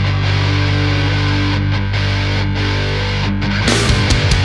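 Heavy metal instrumental passage: held electric guitar chords over a sustained low bass note, with drums and cymbal crashes coming in near the end.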